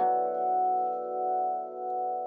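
A steel tongue drum struck once with a soft mallet, one note of a run played from the lowest up. The new note rings on with a long, slowly fading tone, layered over the earlier notes that are still sounding.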